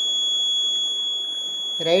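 Piezo buzzer on an accident-detection circuit board sounding one steady, high-pitched tone without a break. It is the alarm going off because the board has registered a right-side accident.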